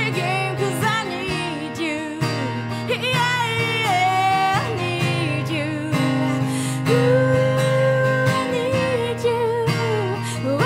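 A woman singing over a strummed acoustic guitar. Her voice slides through ornamented phrases, then holds one long note through the second half.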